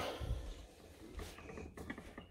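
Faint, irregular light clicks and taps, scattered through the moment.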